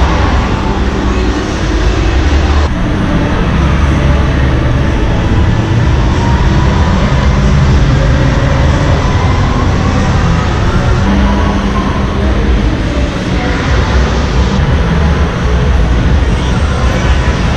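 Loud, steady din of a crowded indoor car show hall, dominated by a low rumble with no single sound standing out.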